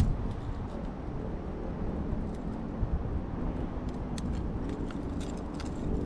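Steady low outdoor rumble, with a few faint short clicks as pliers work treble hooks out of a hooked fish's mouth.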